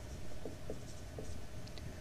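Low, steady room tone with a few faint, short ticks spread through it.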